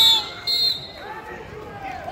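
Referee's whistle blown twice in short, shrill blasts to start the wrestling action, with voices shouting from the sidelines afterwards.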